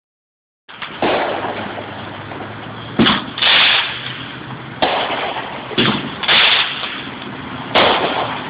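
Aerial fireworks going off: a run of sharp bangs about a second or two apart, between longer hissing bursts.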